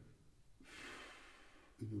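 A man's audible breath, a soft airy rush starting about half a second in and fading over about a second.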